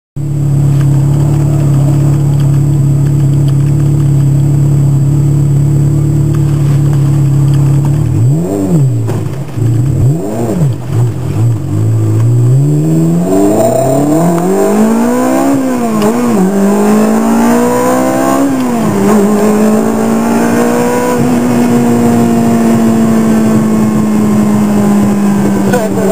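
Ferrari sports car engine heard from inside the car. It holds a steady note for about eight seconds, then is revved sharply a few times. It then pulls away, the pitch rising and dropping back at two gear changes before settling into a steady cruise.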